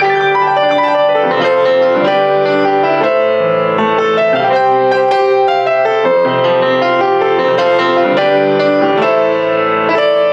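Offenbach PG-1 baby grand piano being played without pause: chords over held bass notes, with a melody moving above them.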